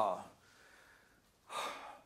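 A man's speech trails off, a short pause follows, then he takes an audible breath in before speaking again.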